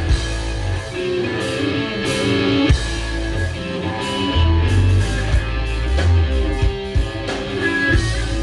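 Rock band playing live: electric guitars, bass guitar and drum kit.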